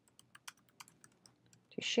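Faint, quick, irregular keystrokes on a computer keyboard as a sentence is typed. A voice starts near the end.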